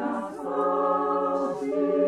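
Mixed four-part (SATB) choir singing long held chords, with a short dip and a change of chord about half a second in.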